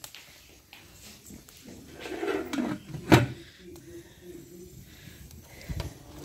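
A metal lid set down on a large aluminium cooking pot, giving one sharp clank about three seconds in over an otherwise low background.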